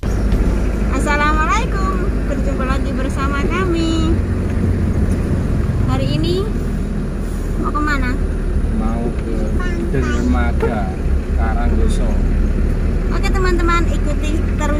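Steady low rumble of a car's engine and road noise heard inside the cabin while driving, with voices speaking over it at intervals.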